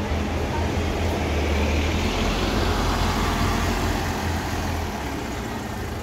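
Articulated city bus's engine running as the bus pulls away, a steady low drone that eases off a little near the end.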